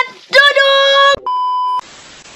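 A woman's voice holding one high, steady note, cut off sharply by a steady test-tone beep, then a burst of TV static hiss near the end: a glitch transition sound effect.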